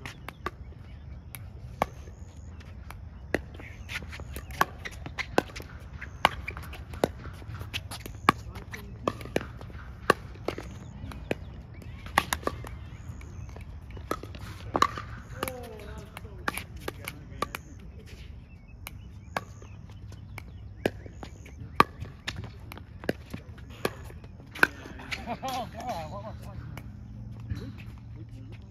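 Pickleball paddles hitting a plastic pickleball back and forth in a long rally: a string of sharp pops, about one every half second to a second. Voices come in faintly now and then.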